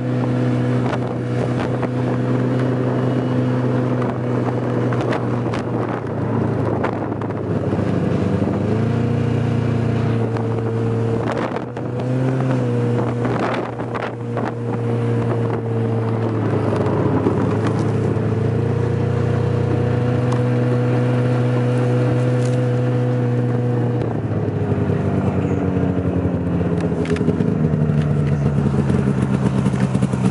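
Snowmobile engine running, heard from on board. Its pitch drops and climbs again a few times as the speed changes, under a steady rush of wind and snow, with a few sharp knocks.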